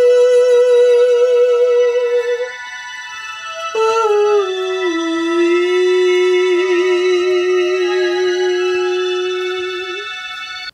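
Electronic tones from a 'singing plant' set-up: electrodes on a potted plant pick up its electrical conductivity and a MIDI controller turns it into notes, played through small speakers. One note is held for about two and a half seconds; then a new note slides down in steps and holds, with higher tones layered over it.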